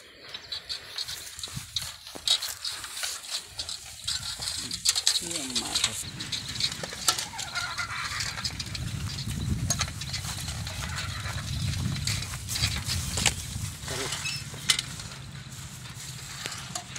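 Bicycle rolling on bare steel wheel rims with the tyres removed, over dry grass and dirt: a continuous, irregular clicking rattle from the rims and frame, with a low rumble for several seconds in the middle.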